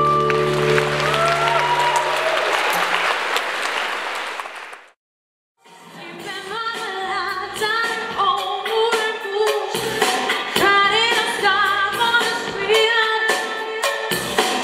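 A live stage-show number ends on a held chord under audience applause that fades out. The sound cuts out briefly about five seconds in, then a new upbeat song starts with a band and a woman singing.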